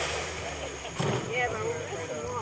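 Indistinct voices of people talking, over a steady low hum, with a brief knock about halfway through.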